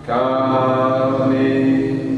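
A man singing a slow worship song, holding one long note that begins just after the start and eases off near the end.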